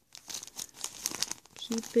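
Small clear plastic bag crinkling irregularly in the hands as a felting needle and thread are put back into it.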